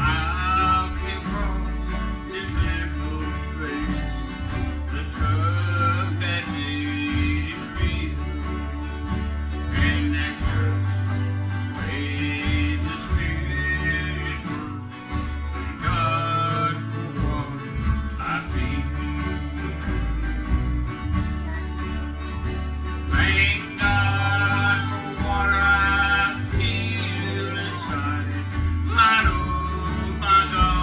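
A man singing a country-style song in phrases, accompanying himself on acoustic guitar.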